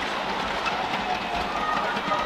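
Badminton rally on an indoor court: players' shoes squeak on the court mat over a steady hum of arena crowd noise.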